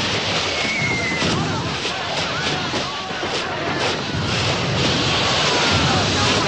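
Battle din: many men shouting and screaming together over a continuous crackle and hiss of burning fireworks, with a run of sharp pops in the middle.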